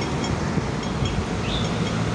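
Steady road-traffic rumble from a city street.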